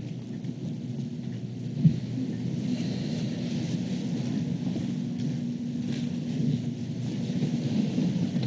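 Steady low rumbling room noise of a meeting hall picked up by the microphones, with a single short knock about two seconds in.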